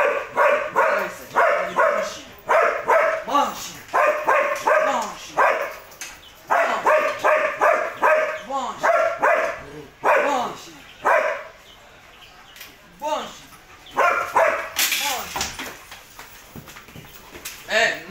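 A dog barking in rapid runs of several barks a second, with short pauses between the runs and a quieter stretch of fainter barks in the later half.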